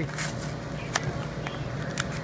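Paper-covered cardboard box top being torn open by hand: a soft rustle with a couple of sharp snaps, the loudest about a second in.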